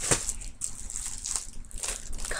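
Magazines being handled: rustling paper and crinkling plastic wrapper, with a sharp click just after the start.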